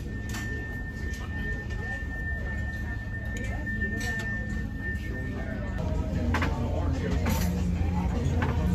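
A cruise ship's emergency alarm signal sounding as one steady high tone during a crew drill, cutting off about six seconds in, over the low hum of the ship.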